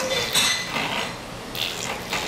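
Metal clinking and rattling from a Jolly Jumper baby bouncer's spring and hanging hardware as the baby bounces, in two bursts about a second apart.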